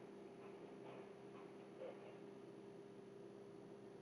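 Near silence: room tone with a steady low hum and a few faint, short ticks in the first half.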